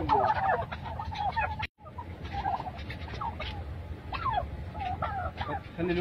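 A flock of domestic turkeys gobbling: a dense chorus of overlapping gobbles for the first second and a half, then a sudden cut-out for an instant and scattered single calls after it.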